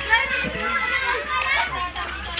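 Speech only: several voices chattering over one another, children's voices among them.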